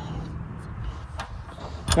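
Wind rumbling on the microphone, with a couple of faint clicks of handled tools about halfway through and near the end.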